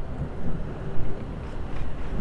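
Wind buffeting the microphone as an unsteady low rumble, with a brief stronger gust about a second in.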